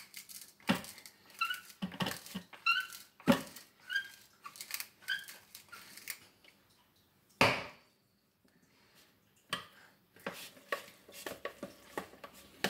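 Tall wooden salt mill twisted by hand over a food processor bowl, grinding salt in a run of about eight quick crunching turns, each with a small squeak. Near the end, a spoon stirs and scrapes the hummus in the bowl.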